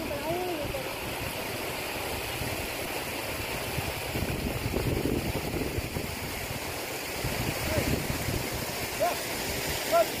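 Muddy floodwater running across a field in a steady rush. A few short pitched calls rise and fall near the start and several more come in the last few seconds.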